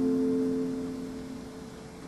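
A harpsichord chord ringing on and dying away, its notes fading steadily over about a second and a half.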